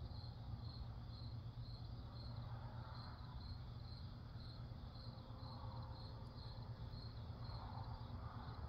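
Faint crickets chirping in a steady, even rhythm, about two to three chirps a second, over a low steady hum.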